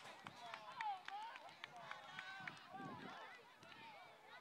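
Faint, distant shouting and calling voices across a youth football field as a play runs, with a scatter of sharp clacks in the first couple of seconds.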